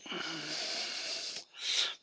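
A man smoking a cigarette: one long breath of about a second and a half through the mouth on the cigarette, then a shorter breath near the end.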